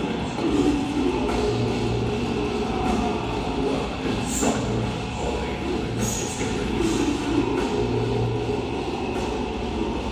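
Death metal band playing live: heavily distorted electric guitars, bass and drums in a dense, loud wall of sound, recorded from the audience.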